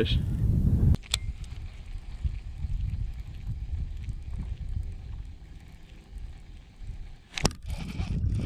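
Low rumble of wind on the microphone. There is a sharp click just after a second in and a brief knock near the end.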